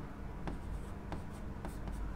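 Marker pen writing on a black writing board: a few faint, short scratches and taps of the tip as letters are drawn, over a low room hum.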